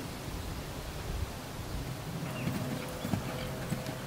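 Dull, irregular hoofbeats of a ridden American Paint Horse gelding moving over sand arena footing.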